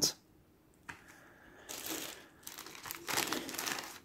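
A clear plastic parts bag crinkling as small parts are taken out of it, in two stretches, after a light click a little under a second in.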